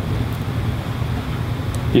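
Steady low rumbling background noise with no distinct event in it.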